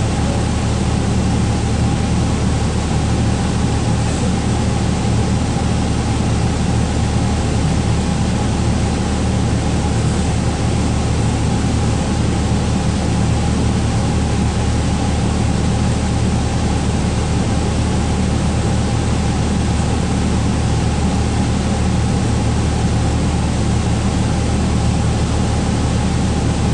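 A 2012 Gillig Low Floor transit bus standing with its engine idling, heard inside the cabin: a steady low hum under an even hiss that does not change.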